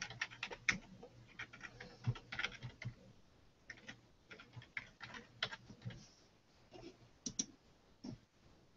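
Typing on a computer keyboard: short, irregular keystroke clicks in uneven runs.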